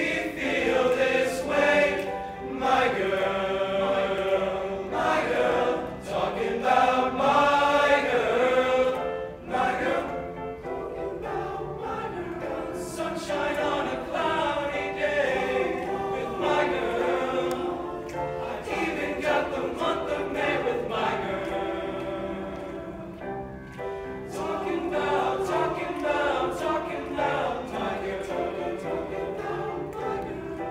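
Male high-school choir singing in harmony, fuller and louder for the first several seconds, then softer.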